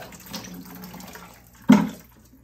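Water trickling and dripping from the opened sediment filter housing into a plastic bucket, fading off. There is a single sudden thump near the end.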